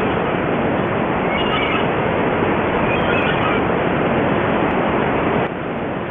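Sea surf on a beach, a steady wash of noise, with a few faint high cries about a second and a half and three seconds in.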